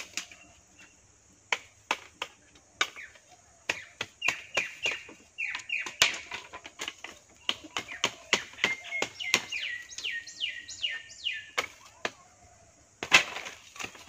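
Sticks and bamboo poles knocking and clacking in sharp, irregular clicks as they are handled and lashed onto a frame. A bird calls through the middle, a run of quick chirps that slide downward in pitch, about three a second near the end of the run.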